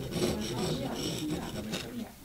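Hand carving tool scraping into a small practice block for a carved facade stone, in gritty scraping strokes.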